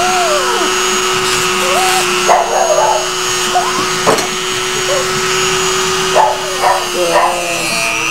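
Electric grooming clipper humming steadily while trimming a poodle's foot; its pitch dips slightly near the end as the blade meets the paw. The dog lets out short, sliding whines several times.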